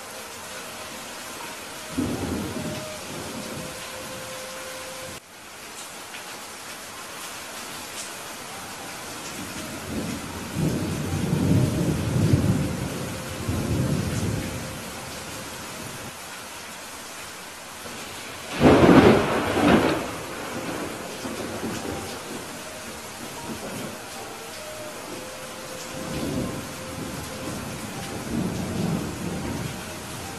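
Steady rain falling, with thunder rolling through it: a short rumble about two seconds in, a longer rolling rumble from about ten seconds in, a loud, sharper thunderclap a little past the middle, and softer rumbles near the end.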